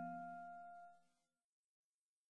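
The tail of a piano chord dying away, then cutting off to silence about a second in.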